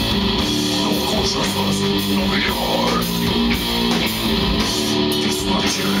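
Death metal band playing live: electric guitars and bass on a riff of chords held about half a second to a second each, over drums.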